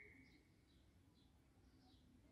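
Near silence: faint room tone with soft, high chirps of distant birds repeating about twice a second.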